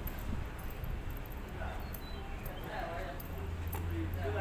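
Indistinct voices of people, with light regular footstep clicks over a steady low hum.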